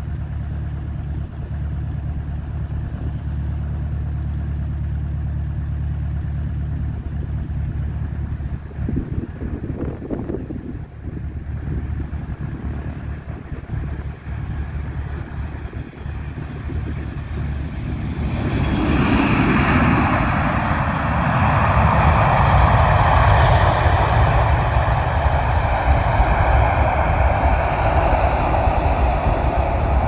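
A steady low engine hum at first, then, about two-thirds of the way in, a sudden loud rushing roar from a Boeing 737-800's CFM56-7B jet engines as the airliner lands close by. The roar stays loud for the last ten seconds.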